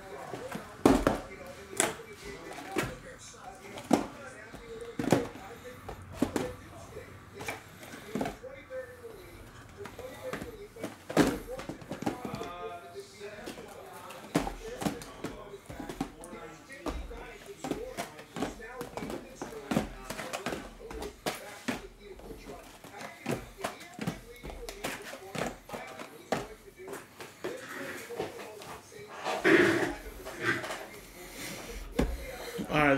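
Cardboard blaster boxes being set down and stacked on a tabletop: a string of irregular light knocks and scuffs, the loudest about a second in and near 11 seconds, with a faint wavering voice-like sound underneath.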